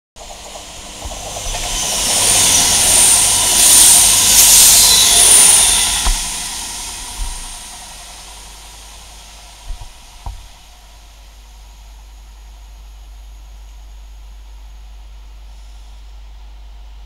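A loud rushing hiss with a high whine swells over a couple of seconds and dies away, typical of a train passing close by at speed. After it only a faint steady rumble remains, with a few light knocks.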